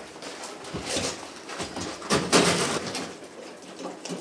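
A portable generator, not running, being wheeled out through a doorway onto gravel: its wheels roll and crunch, with a louder scrape about two seconds in.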